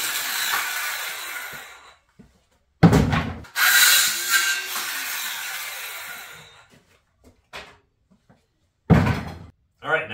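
Cordless circular saw cutting through pressure-treated 2x4s: a cut ending and the blade winding down over about two seconds, a heavy knock about three seconds in, then a second cut that also winds down. Another heavy knock comes near the end.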